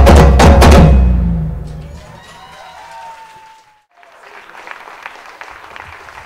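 A percussion ensemble's congas, hand drums and deep bass drums play their final loud hits together, stopping about a second in, with the low drums ringing out for about another second. Faint audience noise follows.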